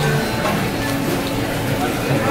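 Indistinct background voices mixed with music, steady throughout.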